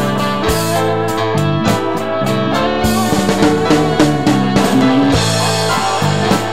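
Rock band music: guitars over bass and a drum kit, with regular drum hits and cymbals growing busier in the second half.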